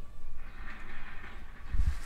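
Outdoor background rumble with a hiss rising about half a second in, and a heavy low thump near the end from handling the camera.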